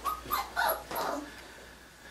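Five-week-old Aussiedoodle puppies yipping and whimpering: about four short, high calls in the first second or so, the last one sliding down in pitch.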